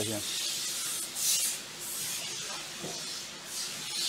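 Paper label slips rustling as a hand rummages through cardboard parts boxes in a drawer, in several short bursts.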